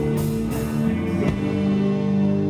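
Live rock band with guitars and drum kit playing the last bars of a song: a few drum hits, then a chord held and left ringing from about one and a half seconds in, as the song ends.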